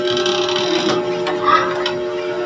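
Background music with steady held notes carrying on, with a few faint clicks.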